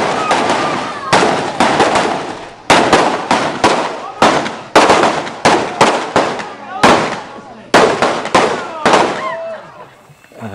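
Revolvers firing blanks in a staged Wild West gunfight: an irregular string of about twenty sharp shots, some only a fraction of a second apart, each with a short ringing tail.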